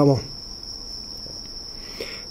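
Crickets singing: a steady, unbroken high-pitched trill.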